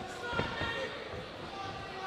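Voices calling out around an MMA cage during a fight, with one sharp thud about half a second in as the fighters engage.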